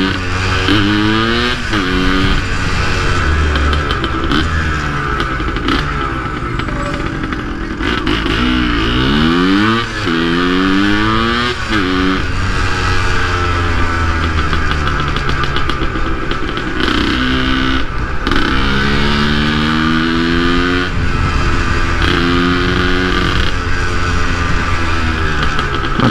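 Yamaha DT 180's single-cylinder two-stroke engine, loud, accelerating in several bursts in stop-and-go traffic. Its pitch climbs and then drops at each gear change, with steadier stretches of cruising in between.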